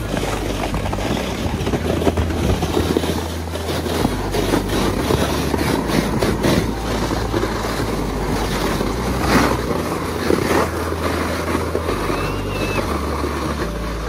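Plastic sleds sliding down packed snow: a steady scraping rush with crackles, and wind buffeting the microphone.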